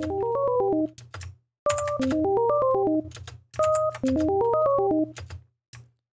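A software instrument plays a short MIDI arpeggio from REAPER's MIDI editor: eight notes that step up and back down, heard three times with short gaps between, over a low held tone. The notes are being moved up by semitones between the plays.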